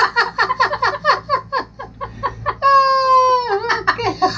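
A man laughing hard in a quick run of high-pitched ha-ha pulses, then one long high held note that drops away shortly before the end.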